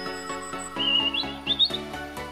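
Background music with evenly paced notes, over which a bird-tweet sound effect chirps a few times, rising in pitch, about a second in.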